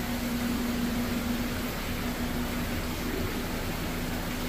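Steady hiss and low hum of aquarium pumps and water circulation in a fish room, with the hum fading somewhat partway through.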